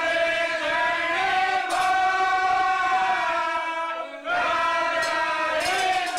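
Men's voices singing a devotional bhajan in Raga Vasant, holding long drawn-out notes, with a short break for breath about four seconds in.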